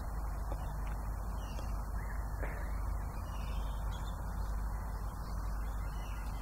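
Steady low outdoor background rumble with no distinct event, and a couple of faint high chirps.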